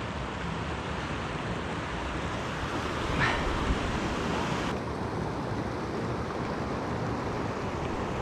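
Creek water running over rocks in shallow riffles: a steady rushing hiss.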